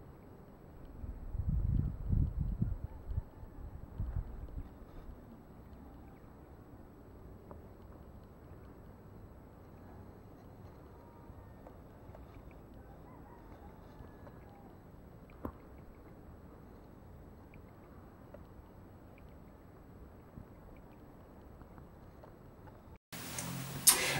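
Wind buffeting an outdoor camera microphone in low rumbling gusts for a few seconds near the start, then settling to a faint steady wind hiss that cuts off suddenly near the end.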